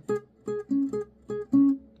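Acoustic guitar played fingerstyle: a short melody of about six single plucked notes, a higher note alternating with a lower one. The lower notes ring longer, the loudest about one and a half seconds in.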